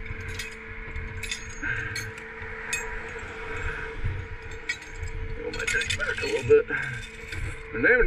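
Steel tow chain and hooks clinking and jangling as they are handled, as a scatter of short metallic clicks over a steady low hum.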